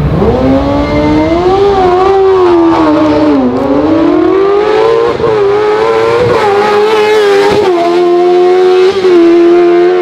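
Zastava 750 hillclimb car's Suzuki GSX-R 1000 inline-four motorcycle engine revving hard at very high rpm. The pitch climbs, sags briefly, then climbs again and holds high, with a few short breaks in the sound.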